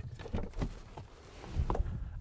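A few faint footsteps on tarmac over quiet outdoor background noise.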